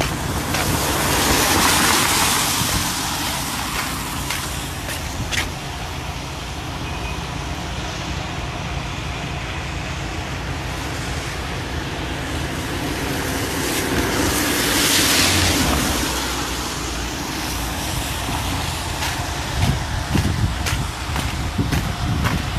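Road traffic on a wet road: a steady low rumble, with a vehicle passing close by about two seconds in and another about fifteen seconds in, each a long swell of tyre hiss that rises and fades.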